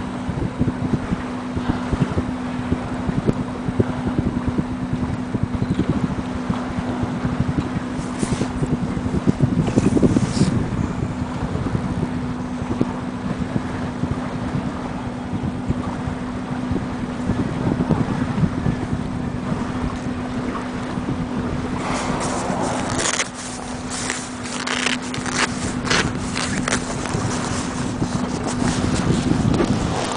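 Outboard motor of a small fishing boat idling with a steady low hum, with wind rumbling on the microphone. About three-quarters of the way through, a run of sharp clicks and knocks starts.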